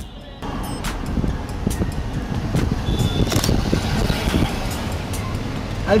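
City street traffic noise heard from inside a car, with background music under it.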